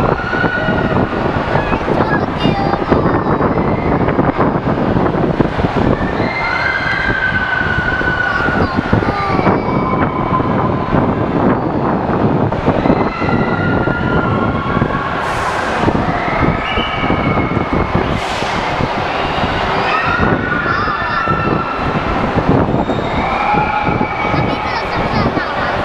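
Loud, steady din of an indoor amusement centre: ride and arcade machine noise, with high drawn-out wavering cries that rise and fall every few seconds.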